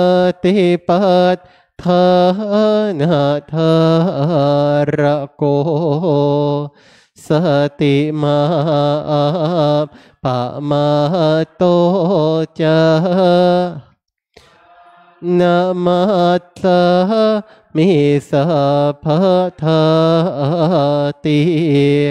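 Thai Buddhist evening chanting: Pali verses recited slowly in a near-monotone, in phrases a few seconds long broken by short pauses for breath, the longest about two-thirds of the way through.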